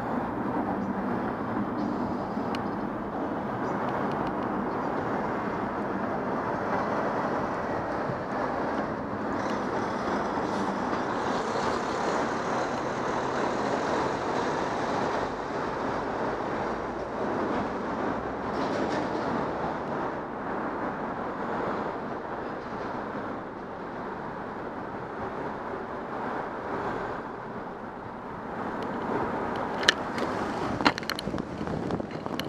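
Steady rumble of road traffic heard from beneath a concrete overpass, growing louder and brighter for several seconds around the middle before easing off again.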